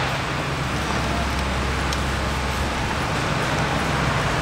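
Steady city street noise: a continuous low traffic rumble under an even hiss, with no single event standing out.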